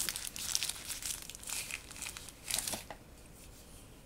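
Thin plastic wrapper crinkling as it is pulled off a small boxed gadget, with one louder rustle near the end; it stops about three seconds in.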